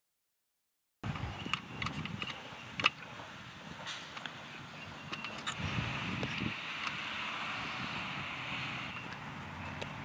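About a second of silence, then outdoor ambience at baseball fielding practice: a steady hum like distant traffic, with several sharp knocks and pops, the loudest about three seconds in.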